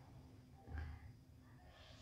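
A woman's faint breathy sigh or soft laughing exhale begins near the end, after a soft thump a little under a second in.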